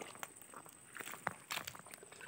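Irregular wet squelches and small splashes of hands working in soft mangrove mud and shallow creek water, a few sharper smacks about halfway through.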